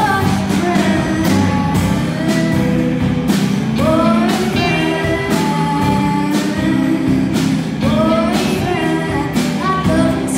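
Live rock band playing: a female lead voice sings over two electric guitars, electric bass and a drum kit, with a steady beat of drum and cymbal hits.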